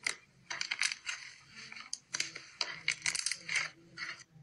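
Fingers poking and squeezing a bubbly, air-filled slime, which gives off clusters of sharp crackling clicks and pops as the trapped air is pressed out.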